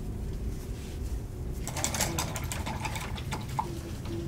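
A pastel stick scratching across paper in rapid back-and-forth strokes, starting a little under two seconds in and stopping near the end, over a low steady room hum.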